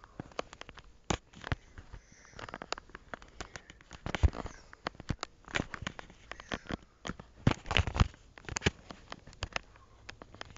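Handling noise from a handheld camera being swung about: irregular clicks, knocks and rustling as fingers and clothing rub against the microphone, with a cluster of louder knocks near the end.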